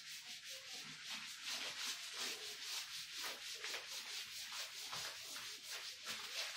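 A cloth rubbed briskly back and forth over a chalkboard, erasing chalk writing: a hissing scrub in quick repeated strokes.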